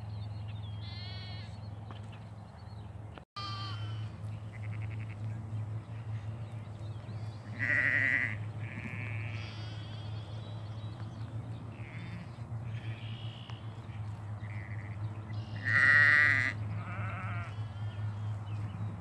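A flock of ewes and young lambs bleating, call after call, with the two loudest bleats about eight seconds in and near the end. A steady low hum runs underneath.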